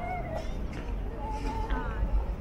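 High-pitched calls of a small child: a short one at the start and a longer, drawn-out one about a second in, over the steady low hum of a busy street.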